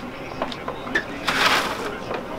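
Freshly chopped hard candy pieces sliding and rattling off a flat metal sheet onto a table. A few light clicks come first, then a short rushing clatter past the middle.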